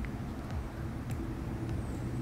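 Steady low background rumble of distant road traffic, with a few faint ticks.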